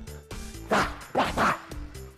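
Background music, over which boxing gloves hit focus mitts three times in quick succession between about ¾ and 1½ seconds in.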